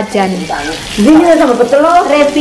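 Food sizzling on a round grill pan over a portable gas stove, under loud voices talking; the voices drop briefly about half a second in, then come back stronger.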